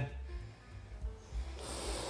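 A man sniffs in sharply through his nose near the end, smelling a probe needle drawn from a cured culaccia ham to judge its aroma and how well it has cured.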